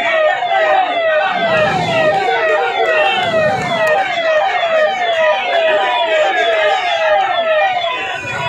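Emergency vehicle siren sounding a fast yelp: a loud, repeating falling sweep, about two a second, with voices faintly underneath.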